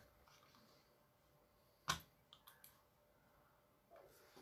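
Near silence in a small room, broken by one sharp click about two seconds in, then a few faint ticks.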